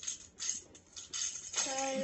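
Short scratchy rustles and light jingles from handling and movement, then a person's voice begins near the end.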